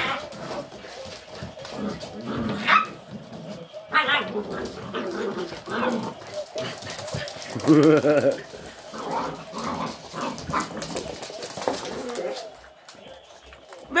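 A mother dog and her puppies at rough play, giving short barks and yips on and off, the loudest calls about eight seconds in.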